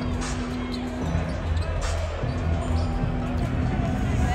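A basketball bouncing on the hardwood court during live play, over bass-heavy arena music and crowd voices.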